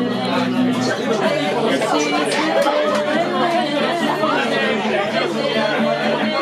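Bar crowd chatter, many voices talking at once, over live acoustic guitar music with sustained low chord tones underneath.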